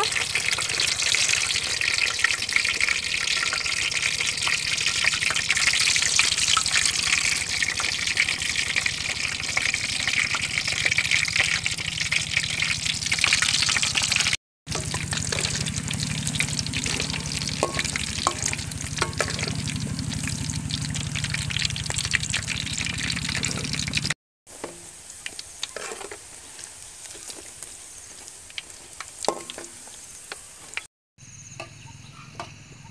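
Meatballs deep-frying in hot oil in an aluminium wok: dense, steady sizzling and crackling of the oil. It breaks off sharply about halfway through and again near the end. After the second break it is much quieter, with a few scattered ticks.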